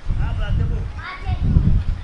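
High-pitched voices, like children's, talking and calling, over a steady low rumble.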